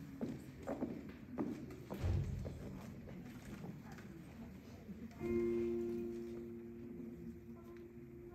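Footsteps across a wooden stage with a low thump about two seconds in. About five seconds in a piano sounds the starting pitches, two notes struck together and left to ring and slowly die away.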